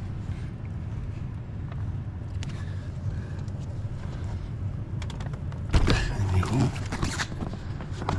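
Range Rover L405 power driver's seat being lowered back onto its floor mounts by hand: a few light knocks and clicks, then a louder clatter of the seat frame and plastic trim settling onto the floor about six seconds in. A steady low hum runs underneath.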